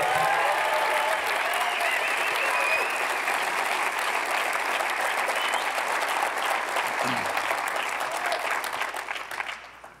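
Audience applauding steadily for about nine seconds, with a few whoops and shouts in the first three seconds, dying away just before the end.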